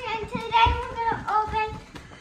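A young girl singing a wordless tune in a high voice, with a few soft thumps of cardboard box flaps being handled.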